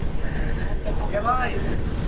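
Steady low rumble of a shuttle bus travelling at speed, its engine and tyres heard from on board.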